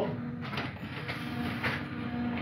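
A hand-made aluminium sleeve tool being fitted onto a Remington 700 rifle bolt's shroud: quiet metal handling with a couple of light knocks, over a steady low hum.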